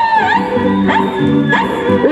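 Live Andean folk dance music with high-pitched singing over a steady rhythmic accompaniment. Twice, about a second in and near the end, a short sharp rising yelp cuts through.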